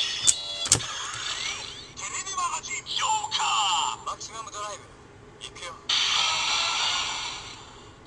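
Kamen Rider W Double Driver transformation-belt toy: sharp plastic clicks as two Gaia Memories are pushed into its slots, then its recorded electronic voice and sound effects play. The sequence ends in a long hissing whoosh.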